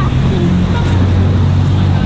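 Street traffic, a steady low rumble of passing and idling cars, with a child's voice calling out at the start.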